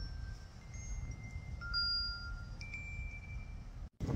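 Wind chime ringing: a handful of single notes at different pitches, one after another and overlapping, over a low rumble of wind on the microphone. The sound cuts out briefly near the end.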